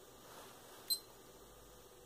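A single short, high-pitched electronic beep from a handheld digital stopwatch, about a second in.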